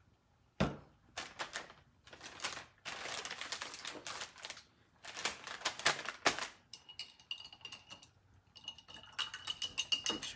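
A paintbrush being rinsed in a small cup of water: quick clicks and taps of the brush against the cup, with sloshing rattles in between, to wash out yellow acrylic paint. A faint steady high tone sounds in the last few seconds.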